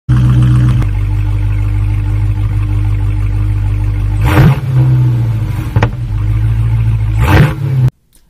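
A car engine running with a steady low hum, broken by two short, loud surges about four and seven seconds in, and a sharp click near six seconds.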